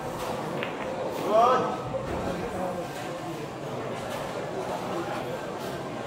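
Background crowd chatter, with a single sharp click of a cue tip striking a pool ball about half a second in. A second later a voice calls out with a short rising tone, the loudest sound.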